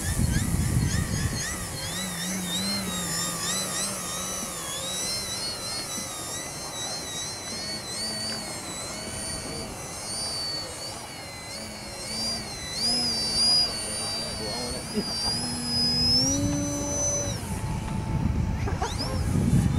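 Electric motor of a radio-controlled model airplane in flight, its high whine rising and falling in pitch as the throttle changes, then climbing and holding steady near the end.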